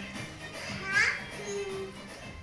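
A young child's brief high-pitched vocal cry, rising in pitch, about a second in, over background music.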